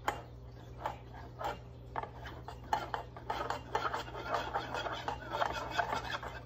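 Metal spoon stirring cornstarch-and-water paint in a metal muffin tin cup, scraping against the bottom: a few separate strokes at first, then faster continuous stirring from about halfway. The cornstarch is being mixed until it dissolves into a liquid paint.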